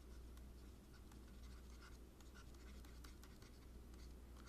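Faint scratching and light tapping of a stylus on a pen tablet as words are handwritten, over a low steady hum.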